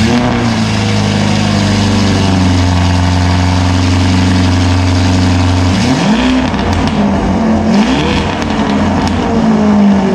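Lamborghini Urus twin-turbo V8 running loud on its exhaust, holding a steady high idle for about six seconds, then revved several times with rising and falling sweeps in the last few seconds. It does not sound tuned.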